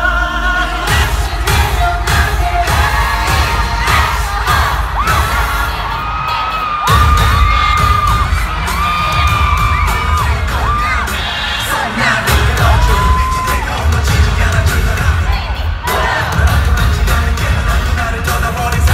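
Live K-pop song played over a large arena sound system: a bass-heavy beat with held sung notes, and a crowd of fans cheering along. The heavy bass thins out about a second in and comes back hard about seven seconds in.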